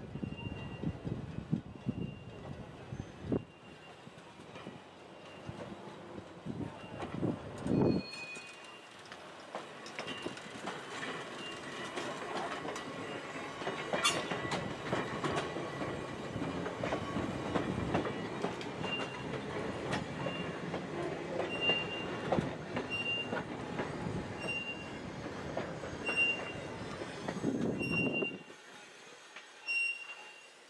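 Electric freight motor slowly hauling a boxcar past at close range, steel wheels clattering over rail joints and squealing on the rails. The rolling noise builds about eight seconds in and drops away near the end. A short bell-like ding repeats about once a second.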